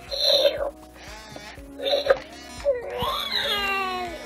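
Galactic Snackin' Grogu animatronic toy's speaker playing baby-like coos as it reacts to the spoon accessory: two short calls, then a longer warbling one from about three seconds in that slides down in pitch.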